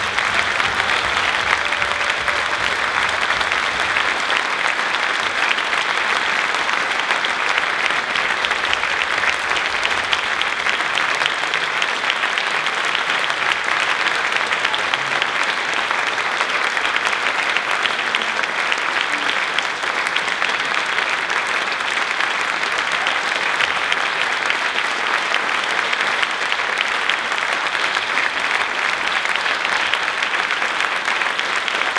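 Audience applauding, a dense and steady clapping that holds at an even level throughout.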